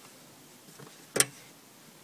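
A single sharp plastic click about a second in, from the hand-worked tab and cover of a car's pollen (cabin air) filter housing.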